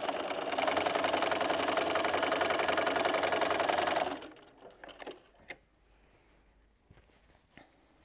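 Bernina Patchwork Edition sewing machine stitching a quarter-inch seam at a steady, fast, even speed, stopping about four seconds in. After it stops, a few faint clicks of fabric and parts being handled.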